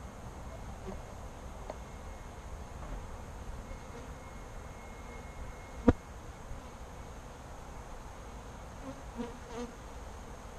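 Saskatraz honey bees buzzing around an open hive and a lifted brood frame, a steady hum. A single sharp click about six seconds in.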